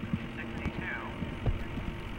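Irregular low thumps over a steady low hum, with a public-address announcer briefly calling a number early on; the strongest thump comes about one and a half seconds in.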